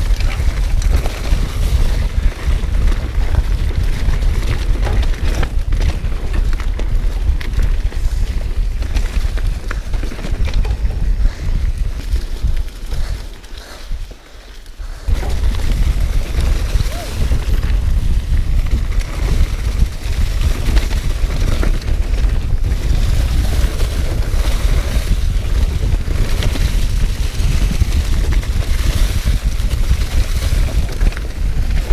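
Wind rumbling on the camera's microphone over the rolling noise of mountain bike tyres on a dirt and leaf-covered singletrack during a fast descent. The noise quietens briefly about halfway through, then returns.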